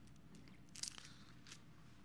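Faint paper rustling from Bible pages being handled at a pulpit microphone, a few soft crinkles with the clearest just before a second in, over near silence.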